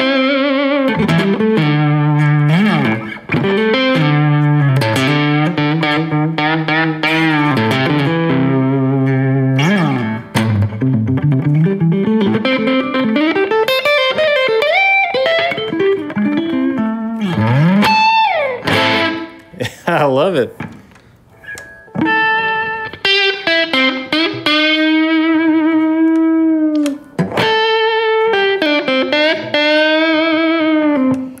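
Jasper Guitars Deja Vudoo electric guitar played through an amp on its neck humbucker, with the tone knob turned partway back up from fully dark. It plays a lead phrase of single notes and held notes, with several string bends that rise and fall in the middle and a quieter pause about two-thirds of the way through.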